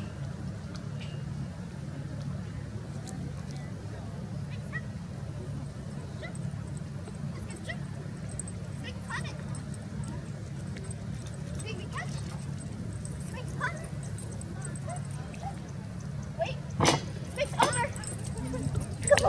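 Outdoor ambience with a steady low hum and faint distant voices, dotted with a few brief faint sounds; several sharp knocks come about a second before the end.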